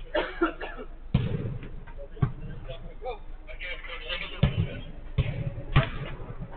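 A football being kicked and thudding on an artificial-turf pitch: five sharp thuds spread over the few seconds, with players' shouts between them, heard thinly through a security camera's microphone.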